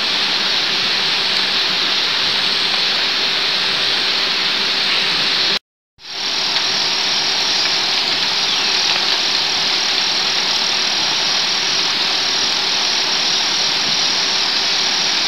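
Steady loud rushing noise with no clear pattern, broken by a dead gap of about half a second a little before the middle, after which it fades back in.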